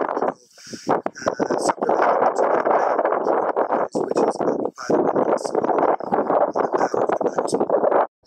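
Wind buffeting the camera microphone in an open yacht cockpit: a loud, rough rushing noise full of small knocks, which drops out briefly about half a second in.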